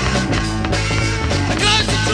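Garage rock played by a three-piece band of electric guitar, bass and drums, steady and loud.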